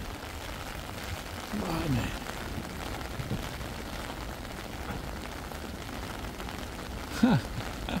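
Steady rain falling, an even hiss throughout, with two brief vocal sounds from the man about two seconds in and near the end.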